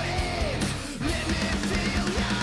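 Hard rock song played by a band: electric guitar over drums, steady and dense.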